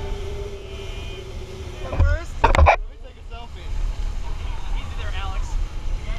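Dive boat running fast over open water: a steady low rumble of engine and hull, with wind buffeting the camera microphone. A person's voice calls out briefly about two seconds in, and fainter voices follow near the end.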